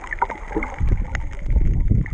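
Underwater sound picked up by a snorkeler's camera: water rushing past the camera in two low surges, about a second in and again near the end, with scattered faint clicks.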